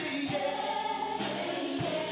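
Vocal group singing live together, holding long sustained notes and moving to new notes a little over a second in.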